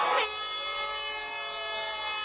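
A handheld horn sounding one long, steady blare that starts a moment in, over faint crowd noise.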